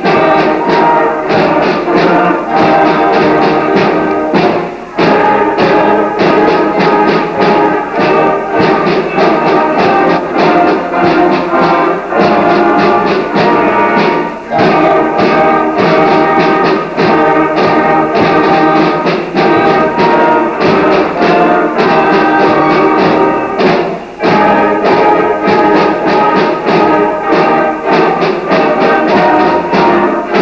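Junior high school concert band playing, with brass and saxophones holding chords over a steady beat. There are short breaks between phrases about five, fourteen and twenty-four seconds in.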